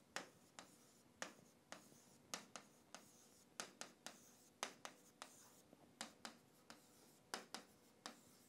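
Faint, irregular taps and short scratches of a stylus on a drawing tablet as numbers are written and circled, about two or three sharp clicks a second.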